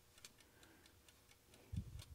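Faint, steady ticking of a wind-up kitchen egg timer, with one soft low thump near the end.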